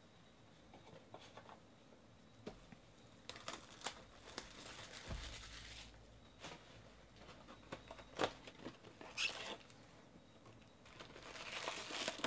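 Faint handling sounds of a cardboard trading-card box and its foil-wrapped packs: scattered rustling and crinkling in short bursts with small knocks, including a dull thud about five seconds in as the box is set down. The crinkling picks up again near the end as the lid is opened and the packs are handled.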